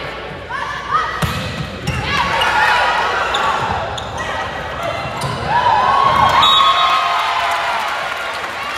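High-pitched shouts and calls of volleyball players and spectators during a rally, loudest a little over halfway through as the point ends. A few sharp smacks of the volleyball being played come in the first two seconds.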